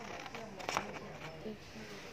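Small scissors cutting colour paper, with one sharp snip under a second in.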